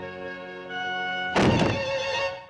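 Cartoon orchestral score holding sustained notes, cut about one and a half seconds in by a sudden loud thunk sound effect, as the mouse springs out of the little box, before the music picks up again.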